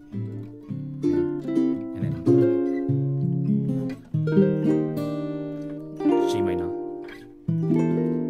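Ukulele playing a slow chord progression: each chord is struck and left to ring out, and a new one follows about every one to two seconds.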